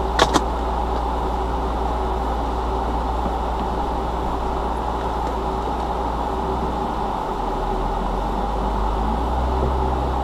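Car engine idling, heard from inside the cabin, with two short clicks just after the start. The engine's low note changes about seven seconds in and it gets a little louder near the end as the car begins to pull away.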